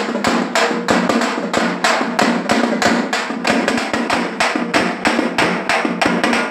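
Frame drums beaten with sticks together with a small barrel drum, playing a fast, steady rhythm of several strokes a second.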